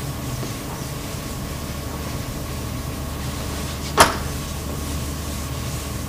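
A chalkboard being wiped with an eraser over a steady room hum, with one sharp knock about four seconds in.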